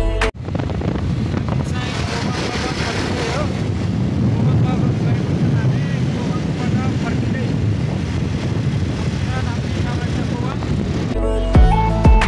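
Live sound from a moving motorcycle: steady wind noise rushing over the microphone, with the engine running underneath and a voice faint in the mix.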